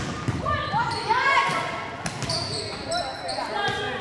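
Volleyball players shouting short calls during a live rally in a gymnasium, with ball contacts and knocks echoing around the hall.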